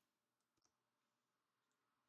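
Near silence, with a single very faint click just over half a second in.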